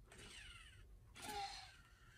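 Near silence broken once, about a second and a quarter in, by a short, faint, wavering high-pitched vocal sound from the animatronic talking baby doll.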